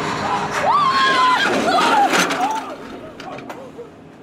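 People yelling and screaming in long, gliding cries, with a few sharp clanks. It gets quieter after about two seconds.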